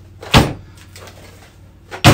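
An Arrma Typhon 6S RC buggy, with an all-metal chassis, is dropped onto a table and lands on its wheels and shocks. It gives a nice thump about a third of a second in, and a second drop lands right at the end.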